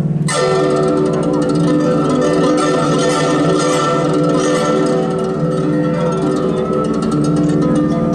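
Guzheng (Chinese plucked zither) played solo, with fast plucked notes ringing over one another. A short break just after the start is followed by a strong new attack.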